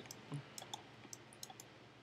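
Faint, irregular clicking of a computer mouse, about eight to ten clicks in two seconds.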